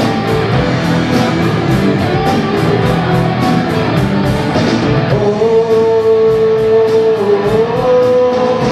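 Live rock band playing, with guitars over a drum kit keeping a steady cymbal beat. From about five seconds in a long note is held and then bends up in pitch near the end.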